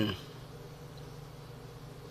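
A man's speech trails off right at the start, leaving a faint, steady low hum of room noise.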